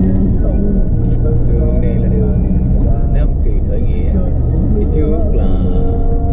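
Low, steady rumble of a car driving through city traffic, heard from inside the cabin, with a voice, talking or singing, over it.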